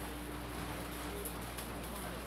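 Steady background noise of an indoor squash hall with a faint hum, and no ball strikes or footfalls.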